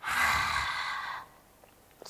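Lion's breath in yoga: a woman's forceful exhalation through the open mouth with the tongue stuck out, a breathy 'haaa' without voice lasting just over a second.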